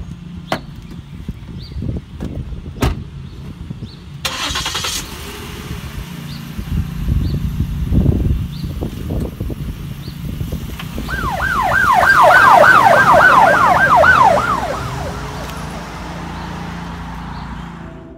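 Car doors shut with a few sharp knocks, then an SUV engine runs as it pulls away. About eleven seconds in, a police yelp siren wails rapidly up and down, about three sweeps a second, for roughly four seconds, then fades.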